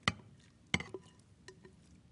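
A spatula and a glass mixing bowl clinking as an oatmeal mixture is scraped out into a baking dish: two sharp knocks under a second apart, then a few lighter ticks.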